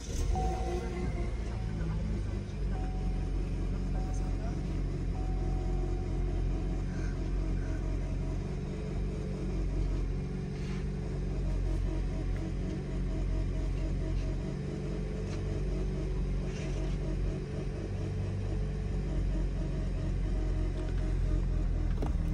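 Car engine starting right at the beginning and then idling steadily, heard from inside the cabin, with a low, even drone.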